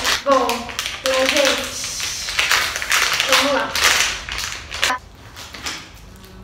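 Plastic packet of EVA foam clay crinkling and crackling as it is torn open and the clay pulled out. The crinkling is densest in the middle and ends with a sharp click about five seconds in. A girl makes short murmured sounds early on.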